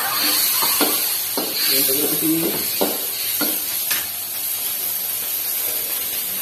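A stir-fry sizzling steadily in a steel wok over a gas burner, with heavy steam, while a spatula knocks against the wok about five times as the food is stirred.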